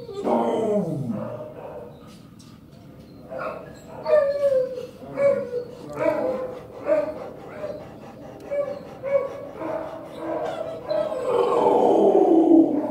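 A large dog vocalizing close up. It gives one long call that falls steeply in pitch, then a run of short whining calls about one a second, and another long falling call near the end.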